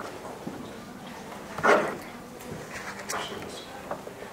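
Meeting-room background with faint voices and movement, and one short, louder noise a little before halfway.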